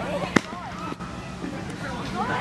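Several young voices chattering and calling out over one another, with a single sharp smack a little under half a second in.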